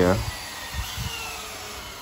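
Two cordless drills, a Hilti SFC 22-A and a DeWalt DCD999, running together as they drive long deck screws into wood: a steady motor whir with a faint whine that slowly falls in pitch.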